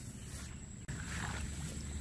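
Footsteps swishing through tall wet grass and shallow water in a flooded rice paddy, over a steady low rumble of wind on the microphone. The steps get louder about a second in.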